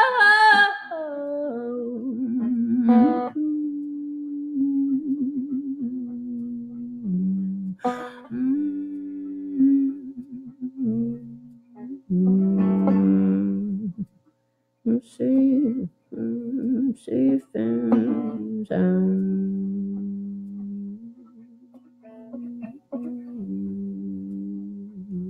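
Solo guitar playing the closing bars of a song: slow plucked notes and chords that ring out with short gaps between them, growing quieter toward the end as the song fades out. A held sung note with vibrato trails off about a second in.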